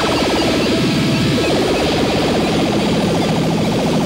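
Live electronic music: a rapidly pulsing synthesizer sound that sweeps down in pitch over the first second and a half, with a second pulsing layer joining it.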